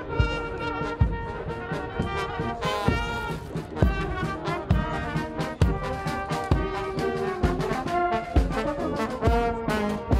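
Marching brass band playing a march: trombones, trumpets, saxophones and tuba over a steady bass-drum beat with cymbal strikes, about one beat a second.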